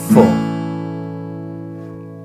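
An acoustic guitar is strummed down once on an open A major chord right at the start. The chord is then left to ring and slowly fade.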